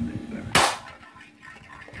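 Single shot from an upgraded spring-powered airsoft pistol, a Colt 'Black Mamba' firing a 0.20 g BB at a tin can at close range: one sharp, loud crack about half a second in, with a short ring after it.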